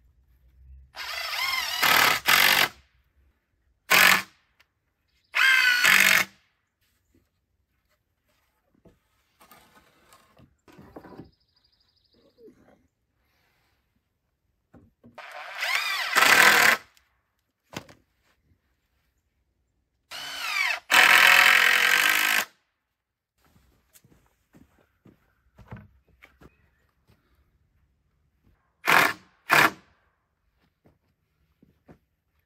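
Cordless drill-driver driving screws into rough-cut lumber in about six short runs, the motor's whine rising and falling in pitch as each screw goes in. There are short pauses between the runs.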